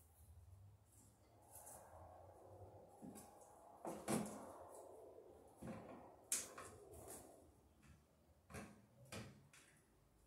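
Handling noises from electrical wiring work at a wall stud: rustling and scraping, with a few sharp clicks and knocks, the loudest about four and six seconds in.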